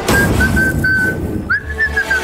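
A whistled tune: a string of short notes that stay close to one pitch, with a quick upward swoop about one and a half seconds in, over background music.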